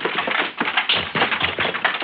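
Radio-drama sound effects of a scuffle: a quick, dense flurry of knocks and slaps as a man is roughed up, on an old, narrow-sounding broadcast recording.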